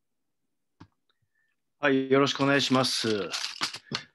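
Silence, a faint click about a second in, then a man speaking from about two seconds in.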